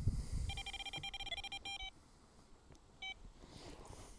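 Electronic carp bite alarm sounding a quick run of short, high beeps for about a second and a half as the rod is handled on the alarm, then a single beep about three seconds in. A brief low rumble comes at the start.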